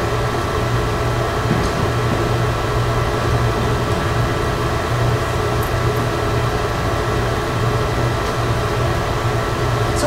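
Steady fan hum with a constant low drone and a few faint steady higher tones, unbroken throughout.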